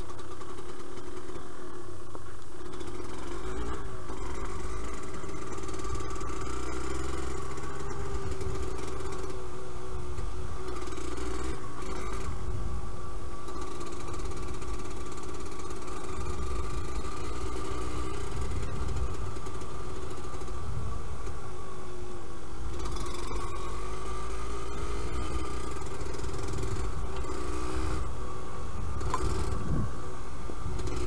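Yamaha DT125LC's liquid-cooled 125 cc two-stroke single engine running under way, its pitch rising and falling as the throttle is opened and closed, over a steady low rumble.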